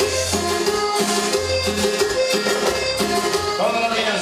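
A live band playing cumbia over loud dance-hall amplification, with a steady beat and a bass line that moves from note to note.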